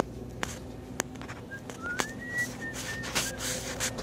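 A high, thin whistle that glides upward about halfway through, is held briefly, then breaks into a few short notes, over a steady low hum, with a few sharp clicks.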